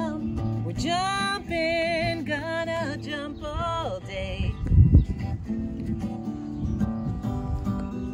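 Acoustic guitar strummed steadily, with a singing voice over it for the first four seconds or so, then guitar alone. A loud low thump comes about five seconds in.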